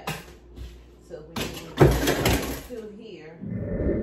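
Rustling and clatter of frozen food packages and bins being moved about in an open chest freezer, with a loud burst of handling noise about two seconds in. Low voices are heard near the end.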